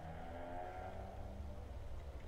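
A low, steady background hum, with a faint pitched tone coming in and fading for about a second and a half in the middle.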